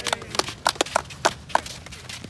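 Footsteps of several people walking on hard-packed beach sand: irregular taps and scuffs, about three or four a second.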